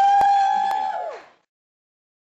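One loud held 'woo' from a voice in the audience as the song ends, rising, holding for about a second and then falling away, with a couple of sharp claps. The sound cuts off abruptly about a second and a half in.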